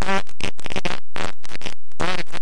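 Loud digital glitch effect: the singing voice is chopped into rapid stuttering fragments, about six a second.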